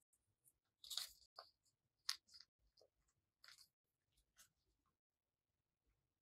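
Faint paper handling: a small piece of white paper folded and creased by hand, giving a few short, separate crinkles and rustles, the sharpest about two seconds in, then little after about five seconds.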